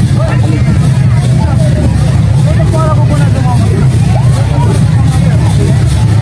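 Crowd hubbub: many voices talking at once over a loud, steady low rumble.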